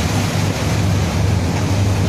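Heavy sea surging and washing over a platform's boat landing, with wind on the microphone and a steady low hum underneath.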